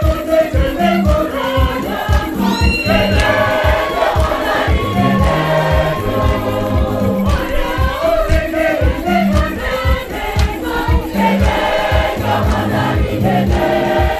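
A choir sings an upbeat, danceable church song over a steady drum beat and bass, with shakers. About two and a half seconds in there is a short, high, rising sound.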